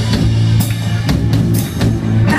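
Live rock band playing an instrumental passage: drum kit hits and cymbals over a steady low bass note, with no vocals.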